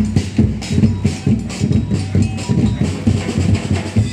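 A street percussion band beating large metal drums with mallets in a steady marching rhythm, several strikes a second.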